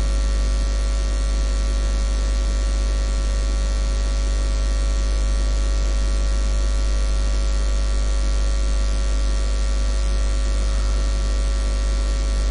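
Steady electrical mains hum and buzz with hiss from the recording's microphone chain. It is unchanging throughout, with a strong low hum and a series of steady higher tones over it.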